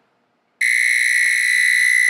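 The Dash Rapid Egg Cooker's end-of-cycle buzzer comes on suddenly about half a second in and holds one loud, steady, high-pitched tone. It is really loud. It signals that the water has boiled off and the cooker has shut off, so the eggs are done.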